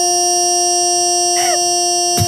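Large rubber chicken toy sounding one long, steady note at an unchanging pitch.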